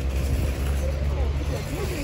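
Outdoor parking-lot ambience: a steady low rumble, with faint voices of passers-by in the second half.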